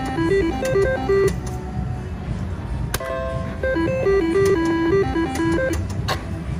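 Electronic reel-spin tune of a Double Diamond Deluxe mechanical-reel slot machine, a short stepped melody played twice as two spins run, with a sharp click at each spin start and reel stop. Low, continuous casino background din underneath.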